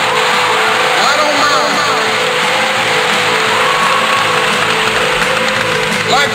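A sampled passage of vehicle noise from a drum and bass track: a steady engine-like wash with scattered fragments of voices and a held tone beneath, and no beat.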